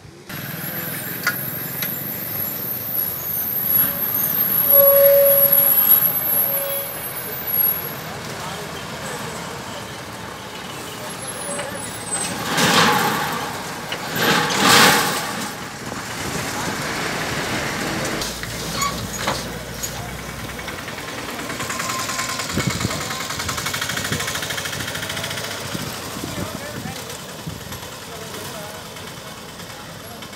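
Road traffic at a roadside: vehicles running and passing, with people's voices in the background. There are two loud surges of noise from passing vehicles about halfway through.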